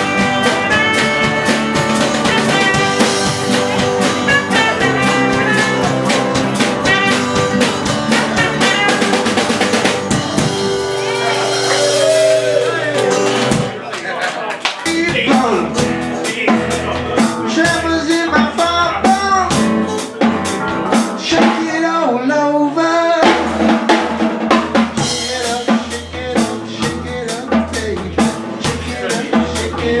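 Live band jamming an instrumental passage: strummed acoustic guitar over a drum kit with low bass notes. Partway through, the low end drops out for a few seconds under a bending lead line, then the full band comes back in.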